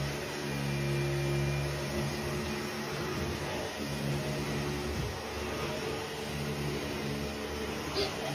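Dyson Ball upright vacuum cleaner running over carpet with a steady motor hum. The hum dips briefly a few times as it is pushed back and forth.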